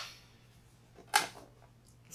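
A short pause in speech: quiet room tone with one brief spoken word ("I'm") about a second in.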